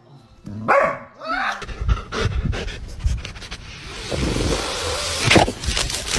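A dog panting and snuffling in quick, breathy strokes, after a short gliding vocal sound about a second in.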